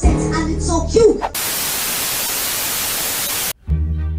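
A cartoon voice singing or shouting over music is cut off about a second in by a loud, even hiss of static. The static lasts about two seconds and stops abruptly. New music starts just before the end.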